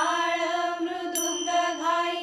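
Women's chorus singing a Marathi abhang (devotional song) together, drawing out long, held notes. A pair of small hand cymbals (manjira) is struck once about a second in, leaving a bright ring.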